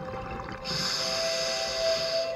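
Soft ambient music with sustained tones, and over it a scuba diver's regulator hissing through one long inhalation that starts a little over half a second in and stops sharply just after the end.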